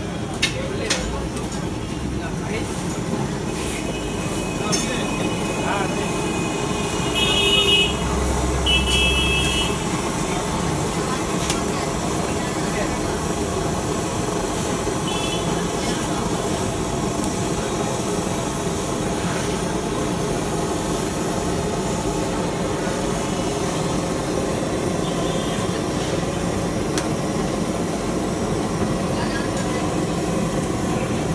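Busy street noise at a roadside food stall: steady traffic and background voices, with vehicle horns honking several times. The loudest honks come about seven to nine seconds in, together with the low rumble of a passing vehicle.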